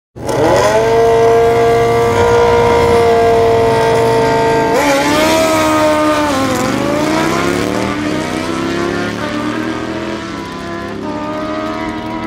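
Car engine held at high, steady revs for about four and a half seconds, then the revs jump, drop and climb again in a run of glides while it slowly gets quieter: a burnout at the drag-strip start line.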